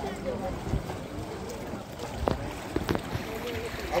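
Poolside ambience: faint voices in the background over steady wind noise on the phone's microphone and the splash of pool water from a swimmer, with two short knocks a little over two and three seconds in.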